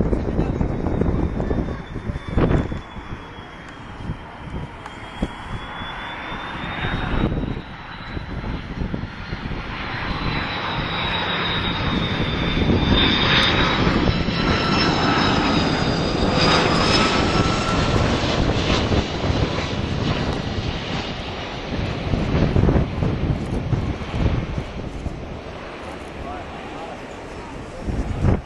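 Twin-engine Airbus A330 jet airliner on final approach passing low overhead, its engines giving a high whine that bends slowly in pitch over a low rumble. The sound grows to its loudest about halfway through, then fades as the aircraft touches down.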